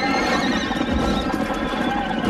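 A horse whinnying, a warbling call that starts at once and fades within about a second, over a dense, busy background of movement.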